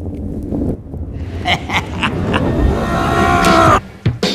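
Granite curling stone sliding over the ice with a low rumble that grows louder as it approaches. A few sharp clicks come in the middle. A high whining tone builds over the last second, then everything cuts off suddenly.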